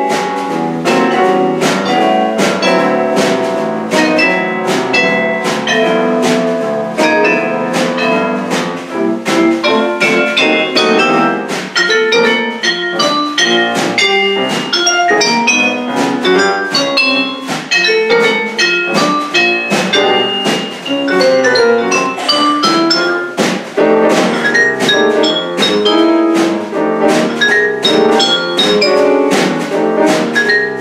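Vibraphone played with yarn mallets in quick runs of ringing struck notes, with a snare drum and a grand piano accompanying.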